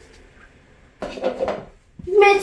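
A small ball lands among plastic cups and rattles about a second in, a clatter lasting about half a second.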